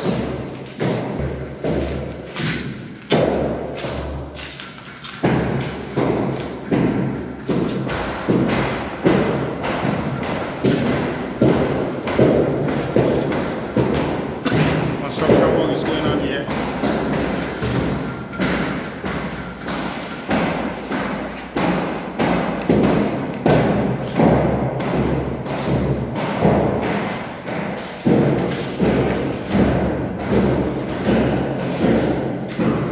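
Hammer blows on a chisel chipping out cracks in a plastered masonry wall, the cracks being opened up for cement repair. The blows fall in a steady rhythm of about one and a half a second, with a short pause a few seconds in.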